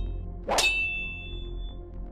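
Sword-clash sound effect: one sharp metallic clang of blade on blade about half a second in, ringing for about a second as it fades.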